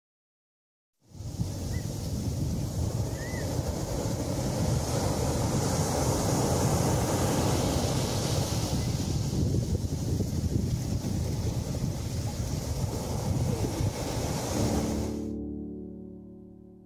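Sea waves breaking on a shore, with wind buffeting the microphone as a heavy low rumble. It starts about a second in and cuts off sharply near the end, where soft piano music takes over.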